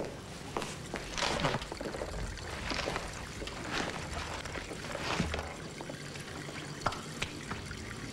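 Irregular rustling and scraping from things being handled on the archive shelves, with a few sharp clicks and a low steady hum underneath.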